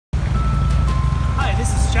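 A few long single notes stepping down in pitch, like a slow melody, over a steady low rumble; a man's voice starts about three quarters of the way through.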